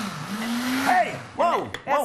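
Countertop blender full of smoothie being switched off: the motor winds down, briefly speeds up again, then spins down to a stop about a second in. Short vocal exclamations follow near the end.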